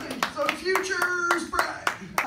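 Small audience clapping in scattered, uneven claps, with a voice held on one note over it near the middle.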